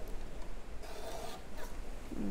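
Fellowes desktop paper cutter slicing through a sheet of paper: a short rasping swish about a second in, followed by a brief second scrape.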